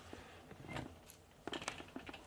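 Faint light clicks of a steel snare cable and nut being handled and seated in a small bench press, a few quick ticks about one and a half seconds in.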